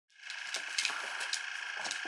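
Small handheld vibrating facial cleansing brush running: a steady, high-pitched buzz, with a few light clicks over it.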